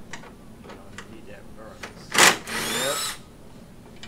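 A power tool, such as a cordless drill or electric ratchet, runs in one short burst about two seconds in. It opens with a sharp, loud rush and then its motor whine rises in pitch for under a second before stopping. Light clicks of tools being handled come before it.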